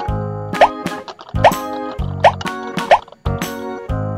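Upbeat boogie-woogie background music with a steady beat. Four short rising bloops sound at roughly even intervals over it and are the loudest sounds.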